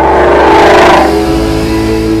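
A Ford Mustang's V8 engine is heard as the car drives by. The sound swells to a peak about a second in and then fades, with music underneath.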